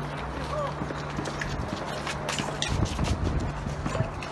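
Hurried running footsteps and phone-handling knocks under a steady low buzz from the engine of a Shahed-136 drone, the moped-like sound of the drone in flight. About three seconds in, a burst of low rumble and clatter briefly covers the buzz.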